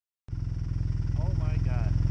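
A vehicle engine running steadily at idle, with an even, rapid low pulsing. A voice speaks briefly about three-quarters of the way through.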